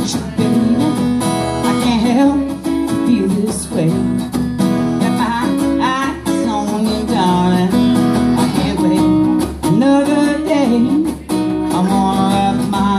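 Live acoustic guitar music in a blues number: steady strummed chords under a melody line of bending, sliding notes.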